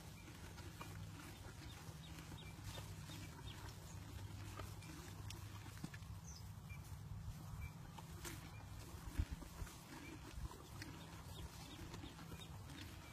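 Two horses sniffing and nuzzling each other close by: soft breathing and muzzle sounds over a faint, steady low hum, with one sharper knock about nine seconds in.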